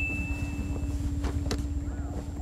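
A single bell-like ding, the sin-counter chime, rings out and fades over about the first second. Under it a steady low hum with a few faint clicks carries on.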